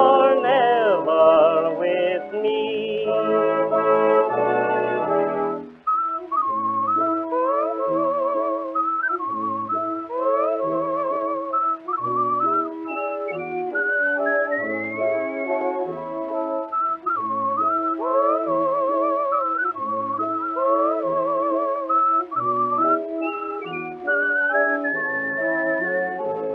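Instrumental break on a 1925 dance-band record: the orchestra finishes a phrase, then from about six seconds in a whistler carries the melody with a wavering vibrato over a light oom-pah accompaniment with regular bass notes.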